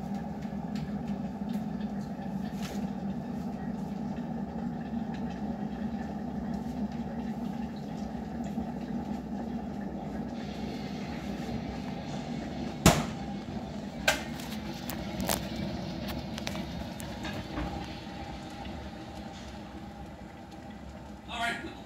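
Kitchen handling sounds over a steady low hum: a loud knock about thirteen seconds in, followed by two lighter clicks a second or so apart, as the fridge-freezer is opened and its door and contents are handled.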